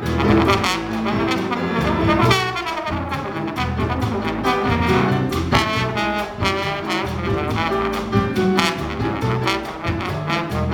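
A trombone playing a solo in Afro-Cuban big-band jazz, backed by the band's rhythm section with piano and drums. About two seconds in the trombone glides down in pitch.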